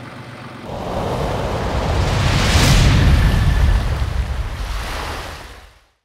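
A deep rushing, rumbling noise swells in about a second in, peaks in the middle with a bright hiss, and fades out to silence at the end.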